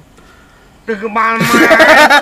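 A quiet first second, then a man and a woman burst into loud, hearty laughter in the second half.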